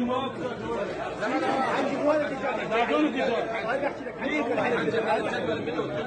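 Several men talking over one another in Arabic: overlapping chatter in a room.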